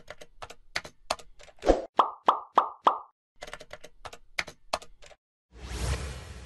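Computer-keyboard typing sound effect: a run of quick key clicks as a web address types out. About two to three seconds in come four short pops, and a brief whoosh swells up near the end.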